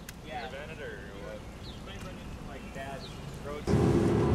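Faint voices of several people talking over a low outdoor background rumble. About three and a half seconds in, this cuts suddenly to the much louder, steady road and engine noise inside a moving car's cabin on a wet road.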